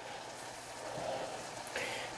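A pot of water boiling steadily with flour dumplings, green bananas and yellow yam in it: an even, low bubbling hiss.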